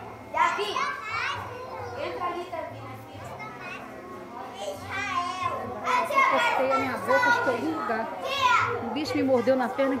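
A group of children's voices at once, calling out and shouting over each other during play, getting louder in the second half.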